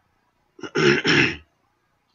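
A man clearing his throat: a small catch, then two loud rough pushes in quick succession, under a second in all.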